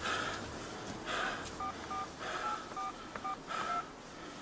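Mobile phone keypad tones as a number is dialled: a quick string of short two-note beeps starting about one and a half seconds in. Between them are a few short bursts of soft noise.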